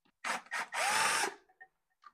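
Cordless drill spinning an 11/32 socket to back out a stator nut inside a GM SI alternator: two short bursts, then a longer run of about half a second whose whine rises in pitch and levels off.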